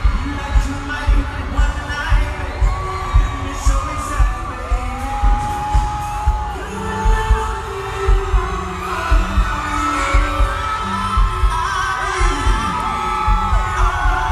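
Amplified live concert music over an arena PA, dominated by a heavy bass beat thumping about two times a second, with gliding synth or vocal lines above it and some crowd noise.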